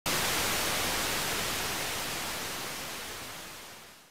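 Analog television static: a loud, even hiss that starts abruptly and fades out over the last second.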